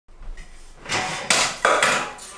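Aluminium folding ladder being handled and shifted: three clattering metal knocks in the second half, the last two sharpest and close together.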